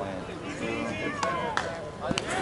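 Voices of players and onlookers calling out across the ball field, one long falling call near the middle, with a single sharp knock about a second and a half in.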